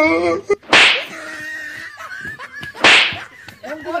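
Two sharp whip-like cracks about two seconds apart, each dying away quickly, with a man's voice in between.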